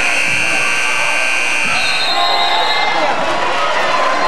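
Gym scoreboard buzzer sounding one steady tone for about two seconds as the game clock runs out, ending the period, over crowd noise and chatter.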